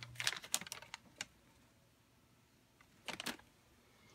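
Crinkly plastic bag of frozen vegetables being handled: a run of sharp crackles in the first second or so, and another short burst of crackling about three seconds in.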